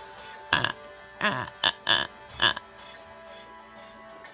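A person's voice making about five short, low grunts with falling pitch in quick succession, over quiet background music.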